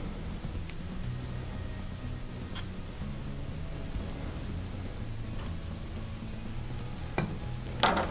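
Quiet handling at a fly-tying vise: a few faint, light clicks and taps as a hollow pen tube and tools are worked against the hook and vise, over a low steady hum.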